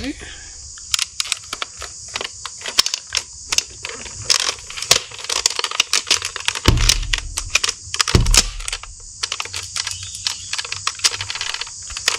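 Plastic parts of a Nerf Sledgefire blaster shell clicking, knocking and rattling as they are handled and fitted together by hand, over a steady hiss. Two duller thumps come about two-thirds of the way through.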